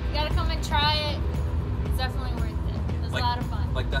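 Short bits of talk over background music with a steady low bass; no gunshot.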